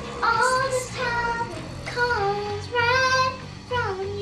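A young girl singing a melody with long held, gliding notes over a repeating musical accompaniment.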